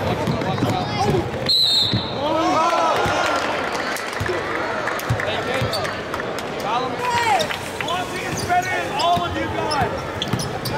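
Live basketball game sound on a hardwood court: sneakers squeaking in many short chirps and the ball bouncing, over the chatter and calls of the gym crowd. A brief high tone sounds about one and a half seconds in.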